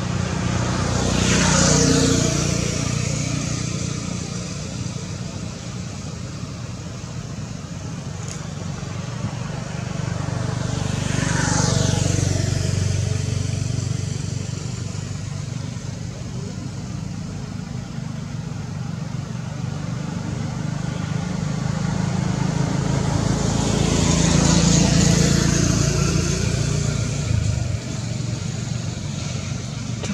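Road traffic: a steady low rumble with three vehicles passing, near the start, about 12 seconds in and about 25 seconds in, each pass swelling louder with a falling whine.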